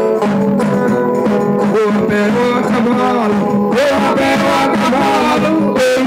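Folk dance music of plucked string instruments playing steady chords with voices singing, the singing growing louder about four seconds in.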